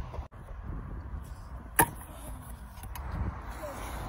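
A stunt scooter hitting concrete once with a sharp clack about two seconds in, over a low steady background.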